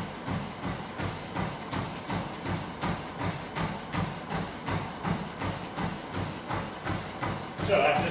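Running footfalls pounding a motorised treadmill's belt at a hard pace, an even beat of about three strikes a second, over the steady low hum of the treadmill.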